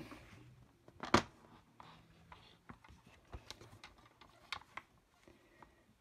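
Cardstock and a paper trimmer being handled and set in place: scattered light clicks and taps with faint paper rustle, one sharp click about a second in.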